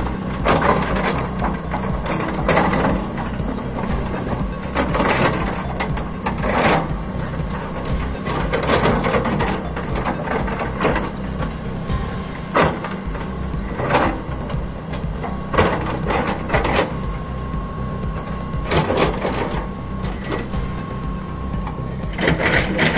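Tracked excavator's diesel engine running steadily while its bucket digs into and scrapes soil and stones, with irregular crunching and cracking every second or two.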